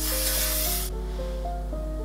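Aerosol hairspray can spraying onto hair in one hissing burst that stops just under a second in, over background music with sustained notes.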